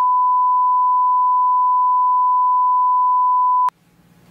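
Censor bleep: one steady, single-pitched beep that cuts off suddenly near the end.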